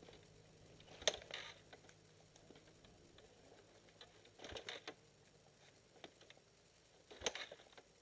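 A dirt bike being kick-started: three short, quiet mechanical clatters about three seconds apart, without the engine catching.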